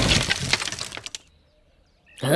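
Cartoon off-screen crash sound effect: a clatter of tinkling, glass-like debris that dies away over about a second, leaving near silence.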